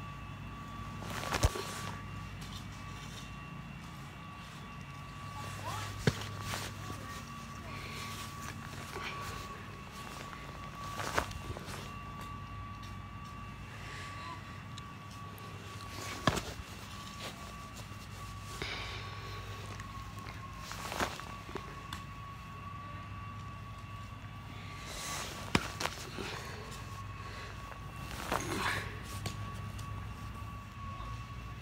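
A football slapping into a gloved hand as it is caught one-handed: a sharp short smack roughly every five seconds, with two close together near the end.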